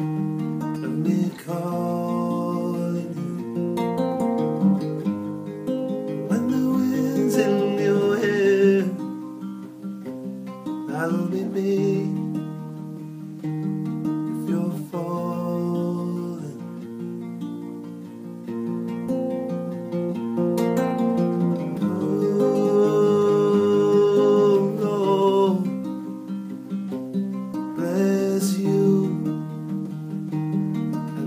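Classical guitar played as song accompaniment, chords plucked and strummed in a slow, continuous pattern, with a man's voice singing over it in places.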